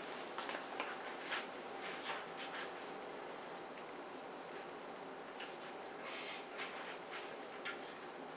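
Faint rustling of clothing and a scatter of soft clicks as a person settles back on a weight bench and takes hold of a racked barbell, with a brief louder rustle a little past the middle.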